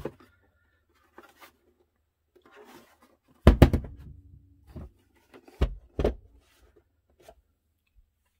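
Jelly Comb monitor riser stand's fold-out compartment parts being pushed shut by hand: light clicks and rustling, then a cluster of sharp knocks about three and a half seconds in and two more knocks around six seconds.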